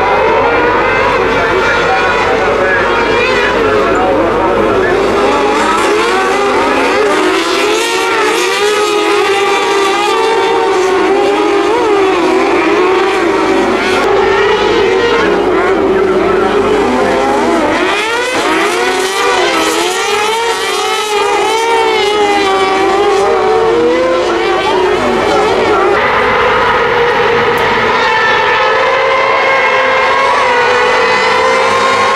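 A pack of kartcross buggies racing together, their high-revving motorcycle-derived engines overlapping and rising and falling in pitch as the drivers accelerate, shift and lift through the corners.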